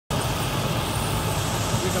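Farm tractor's diesel engine running steadily under load, heard up close from on the tractor itself.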